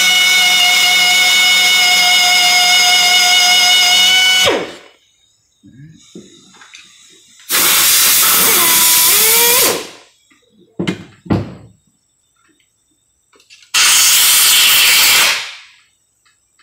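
Pneumatic drill running steadily with a high whine for about four and a half seconds, backing the M11x1.5 Time-Sert thread tap out of a head-bolt hole in an aluminium engine block. Then two hissing blasts of compressed air from an air blow gun, about two seconds each, clearing chips and oil from the freshly tapped hole.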